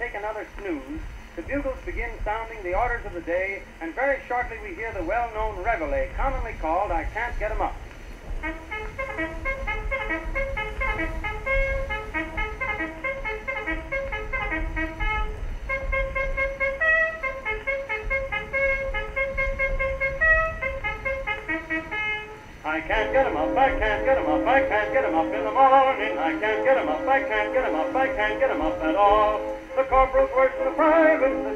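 Old acoustic gramophone record playing on a 1914 Victrola VV-X. A voice with wavering pitch comes first, then a run of separate held notes, and a louder, fuller band passage starts about 23 seconds in. A low rumble of background ambience runs underneath.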